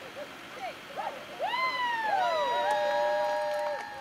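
High squeals and whines from a tow truck rolling an overturned car onto its side with its boom and cable. Several short swooping squeals are followed by two steady high tones held together until just before the end.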